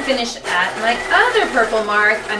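A voice, rising and falling in pitch without clear words.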